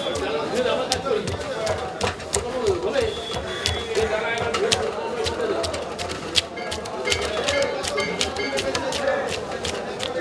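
Rapid, irregular scraping clicks of a blade scaling a large fish on a metal tray, over a background of market voices.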